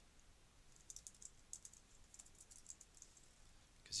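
Faint typing on a computer keyboard: a quick, irregular run of key clicks starting about a second in.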